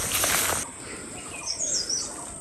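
Leaves and stems rustling and brushing as someone pushes through dense undergrowth, cutting off abruptly about half a second in. Then a quieter outdoor background, with a bird's high, warbling chirp near the end.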